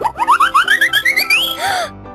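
Cartoon magic transformation sound effect: a run of quick rising pitch sweeps that climb higher over about a second and a half, ending in a short shimmering sparkle, over light background music.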